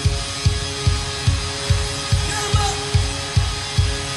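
Live rock band playing, heard from the soundboard: a steady kick-drum beat about two to three times a second under held keyboard tones, with short guitar-like pitch slides.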